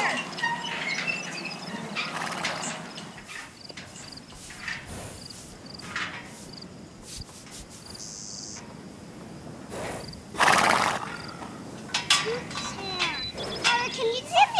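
A horse lets out one loud snort about ten seconds in, lasting under a second, over faint outdoor voices and a thin insect chirr.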